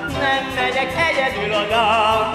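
Operetta song: a singer with strong vibrato over orchestral accompaniment.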